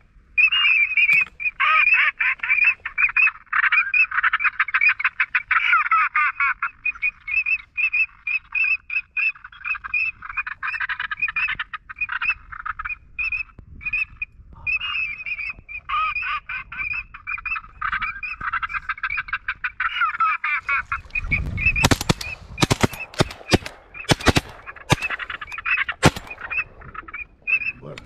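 A large flock of ducks calling, many overlapping calls at once, with a faint high note repeating at an even pace. In the last part a run of sharp knocks with rumble cuts across the calls.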